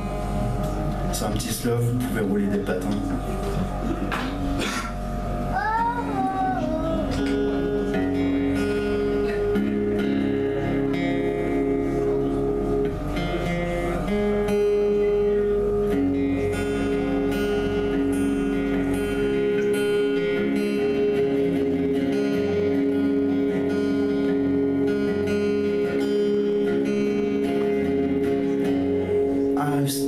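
Solo acoustic guitar: loose plucked notes, a few sliding up in pitch as a string is retuned into an alternate tuning, then from about seven seconds in a steady repeating pattern of ringing chords.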